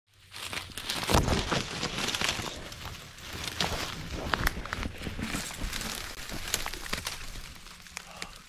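Dry reed stems rustling and crackling as they are pushed aside by hand and brushed past, with many sharp snaps and clicks.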